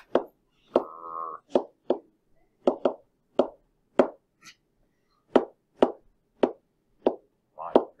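Pen tapping on a SMART Board interactive whiteboard, one sharp tap for each electron dot drawn: about a dozen taps at uneven spacing, roughly one or two a second. A short drawn-out spoken word about a second in.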